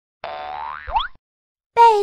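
A cartoon 'boing' sound effect: a buzzy tone that bends up and down, then sweeps quickly upward with a soft thump, lasting under a second. A voice starts speaking near the end.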